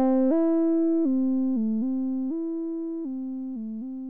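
Logic Pro's ES M monophonic synthesizer arpeggiating a held A minor chord through the Hypercyclic arpeggiator plugin: one note at a time, stepping up and down between the chord's notes with no gaps between them, slowly fading. It is the mono-synth arpeggio that comes closer to what the player wants.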